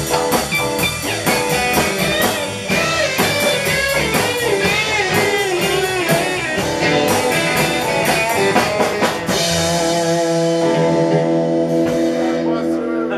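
Live blues-rock band playing: an electric guitar lead with bending notes over a drum kit and bass. About nine seconds in the drums stop and the band holds a ringing chord.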